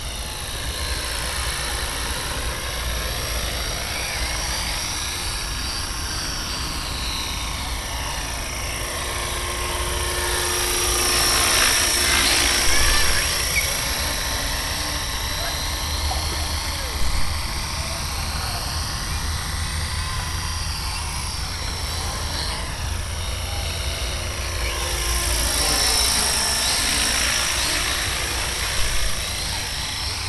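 Electric RC helicopter, an Ikarus Eco 7 in a Bell Jet Ranger body, flying circuits: a steady motor and rotor whine that swells and sweeps down then up in pitch as it passes close, twice, loudest about twelve and twenty-six seconds in. A couple of short knocks come near the middle and near the end.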